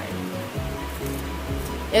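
Background music: sustained held notes over a steady bass line.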